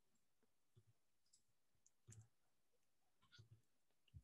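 Near silence broken by a few faint, scattered computer mouse clicks.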